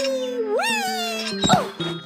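High-pitched cartoon character's voice calling out in long sliding glides over light background music, then a sharp thud about one and a half seconds in as the character hits the ground.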